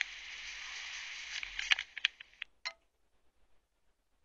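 Livescribe Echo smartpen's small built-in speaker playing back the last seconds of a recording: a thin hiss with a few clicks that stops about two and a half seconds in, followed by a brief tone, then near silence.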